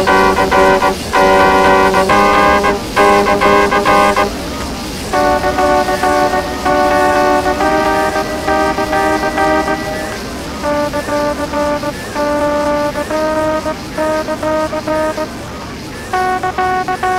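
A small trumpet playing a simple tune of held notes, in phrases broken by short pauses; after about ten seconds the notes become shorter and choppier.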